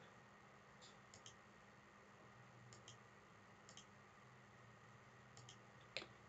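Faint computer mouse clicks, mostly in quick pairs, about six times over near-silent room tone.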